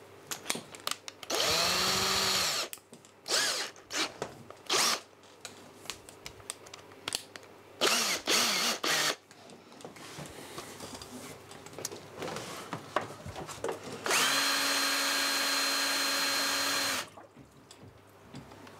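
Electric drill spinning a drill pump: a burst of about a second that rises in pitch as it spins up, a few short blips, then a steady run of about three seconds near the end that cuts off suddenly.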